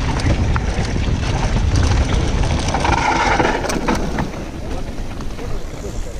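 Wind buffeting the microphone and tyres running over gravel on a full-suspension mountain bike descending a trail, with clicks and rattles from stones and the bike. The noise drops about four seconds in as the bike slows.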